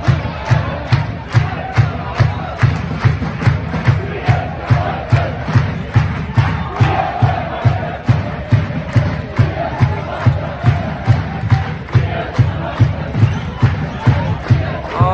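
A crowd chanting over a steady, heavy drumbeat of about two and a half beats a second in a large indoor arena.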